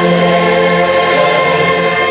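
A choir singing a CCB hymn, holding one long chord.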